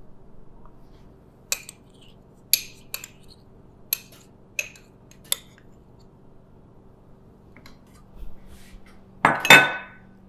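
A small ceramic dish and spoon clink and tap against a stainless steel food processor bowl as tahini is scraped in: six sharp taps spread over a few seconds. Near the end comes a louder, ringing clatter of dishes.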